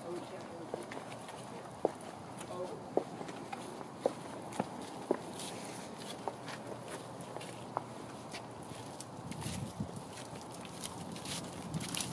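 Footsteps of a person and a dog walking on asphalt, heard as scattered, irregular light clicks and scuffs over a faint outdoor background.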